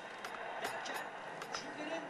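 Faint background voices in a room, with a few light clicks or taps scattered through.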